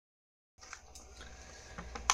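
Faint room tone with a steady low hum and a few soft clicks, after a brief moment of total silence as the recording begins.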